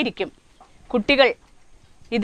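A woman's narrating voice: two brief utterances with pauses between.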